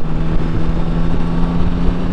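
Motorcycle engine running at a steady cruising speed with an even, unchanging hum, under heavy wind and road rumble on the rider's microphone.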